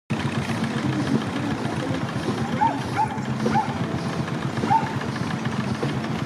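Steam traction engine running as it drives slowly along, a steady mechanical din, with a dog barking in four short yaps around the middle.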